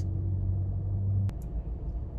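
Low, steady rumble of a car idling, heard inside the cabin; it cuts off suddenly with a click a little over a second in.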